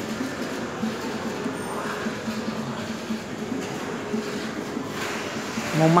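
Steady background noise of a shopping mall's open interior, an even hubbub with faint, indistinct sounds in it.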